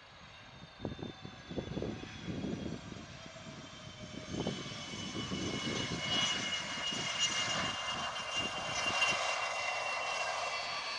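Fokker 100's two rear-mounted Rolls-Royce Tay turbofans whining at low taxi power as the jet taxis past, the high whine growing steadily louder as it approaches. Irregular low rumbles come and go in the first half.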